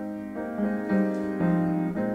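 Grand piano playing slow hymn chords, a new chord struck about every half second.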